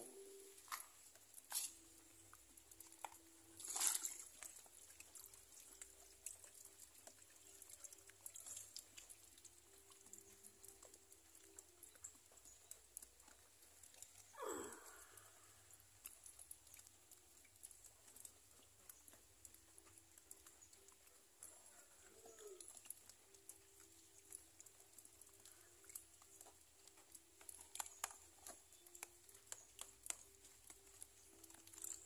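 Faint cooing of a dove, in runs of short low notes repeated at one pitch, over near silence. A few soft knocks break in, the loudest about four seconds in, with a brief sweeping rustle near the middle.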